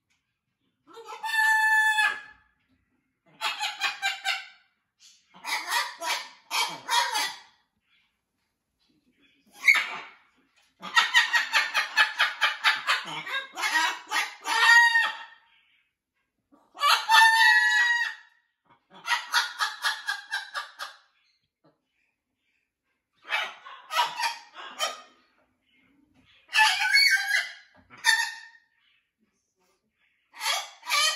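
Macaw calling in about ten separate bouts of one to three seconds, loud pitched squawks and chatter that rise and fall, with short pauses between; the longest bout is near the middle.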